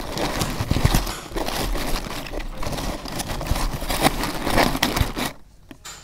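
Shredded kraft paper filler being pushed and tucked by hand inside a corrugated cardboard box: a dense crinkling rustle that stops about five seconds in.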